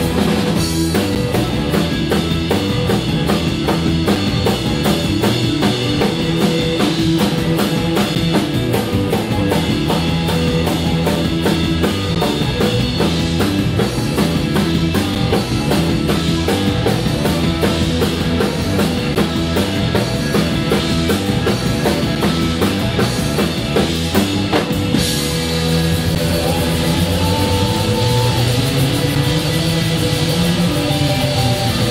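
Band playing funk-rock on drum kit, guitar and bass. The drumming drops away near the end, leaving the guitar.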